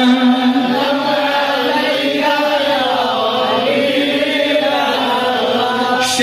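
A man chanting a naat (Islamic devotional poem) into a microphone, a melodic solo voice holding long notes that glide slowly up and down.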